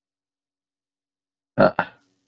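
Dead silence, then near the end a man's short vocal 'uh' in two quick pulses.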